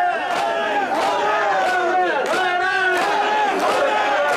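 Mikoshi bearers shouting a chant together as a crowd, with sharp wooden claps of hyoshigi clappers struck now and then over the voices.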